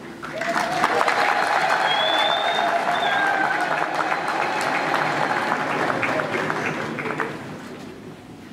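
Large crowd of graduates applauding and cheering in a hall: dense clapping that rises about half a second in, with voices held in a long cheer, and tapers off near the end.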